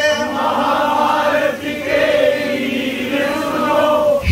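A group of voices singing a devotional kirtan line together in chorus, at a steady, fairly loud level.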